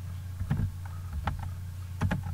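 A few computer keyboard keystrokes, short separate clicks about a second apart, over a steady low electrical hum.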